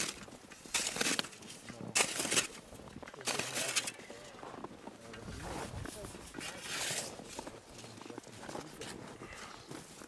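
Snow shovel blade scraping and shaving the packed snow blocks of an igloo: a series of short, hissing scrapes, most in the first four seconds and one more about seven seconds in, with voices in the background.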